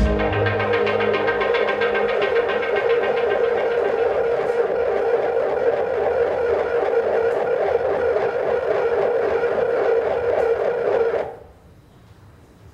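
Electric bass played through effects, a loud sustained drone with a dense buzzing texture that cuts off abruptly near the end.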